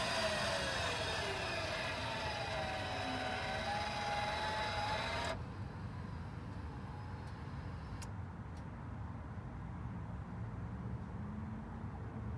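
Mighty Mule dual gate opener's electric arm motors running with a whine that slowly shifts in pitch as the gates open, cutting off abruptly about five seconds in as the gates reach the end of their travel.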